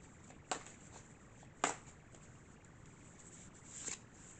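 Quiet room with two sharp taps about a second apart, then a short rustle near the end, from a hand handling a tarot deck to draw a card.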